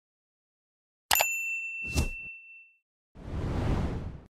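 Subscribe-animation sound effects: a sharp click about a second in, followed by a bright notification-bell ding that rings on for over a second. A short pop follows, then a whoosh near the end.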